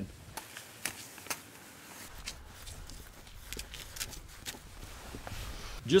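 Faint handling sounds of a black bear's hide being slowly peeled back from the carcass with knife and hands: scattered small clicks and soft rustling at irregular moments.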